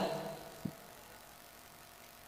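A pause in a man's amplified speech: his voice trails off at the start, one faint click follows, then only low, steady room hiss.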